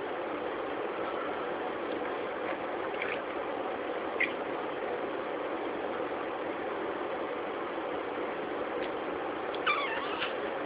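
Budgerigar giving a few short, high chirps, a faint one about three seconds in, another a second later, and a brief warbling chirp near the end, over a steady background hiss.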